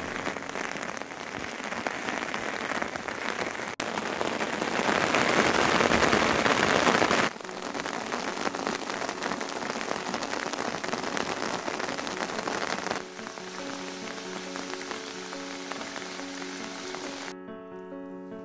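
Heavy rain falling steadily on the mountainside, loudest a few seconds in, with sudden jumps in level where the shots change. A slow piano tune rises underneath in the second half and is left alone just before the end when the rain cuts out.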